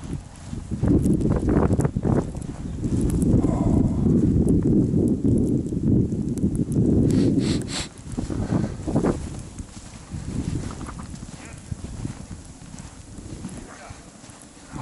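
Crunching footsteps in snow, with heavy rumbling noise on the camera's microphone through the first half. Then a few sharper knocks, and it grows quieter.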